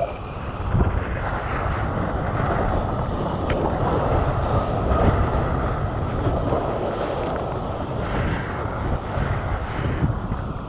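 Steady rush of water and wind on a mouth-mounted action camera as a surfboard rides a breaking wave.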